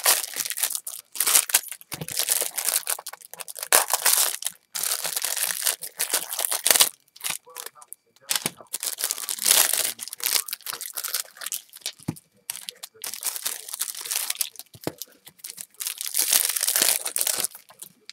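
Crinkling and tearing of 1986 Fleer trading-card pack wrappers handled and ripped open by hand, in irregular bursts of crackle.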